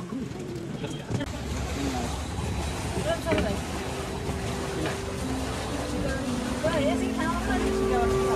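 Indistinct voices of several people talking over a low steady rumble, with music of held notes coming in near the end.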